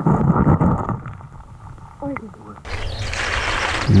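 Muffled underwater rumbling and knocking as a rock is shifted in a shallow creek, with a brief voice-like sound about two seconds in. Then a steady rush of creek water that starts suddenly at a cut.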